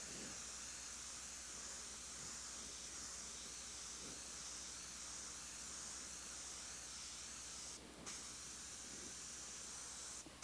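Airbrush spraying paint onto canvas: a steady, fairly faint hiss, broken briefly about eight seconds in.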